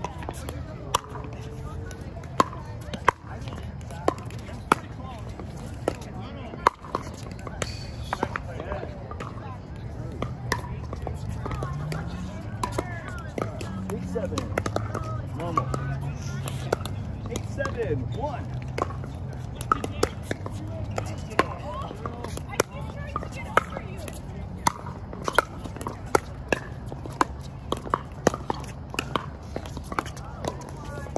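Pickleball paddles striking plastic balls: sharp, irregular pops from this and neighbouring courts, over faint chatter.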